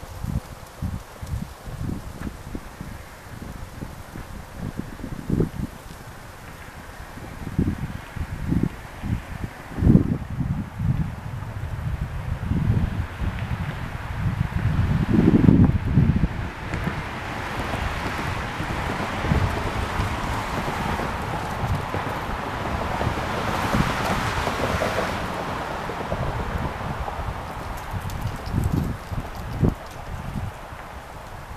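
Wind buffeting the microphone in irregular gusts. Partway through, a broad rushing hiss swells for several seconds and then fades.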